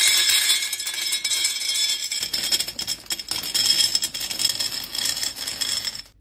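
Dry penne pasta poured from a bag into a tall glass jar: a continuous, dense rattle of hard pasta tubes striking the glass and each other. It starts sharply and cuts off suddenly at the end as the pouring stops.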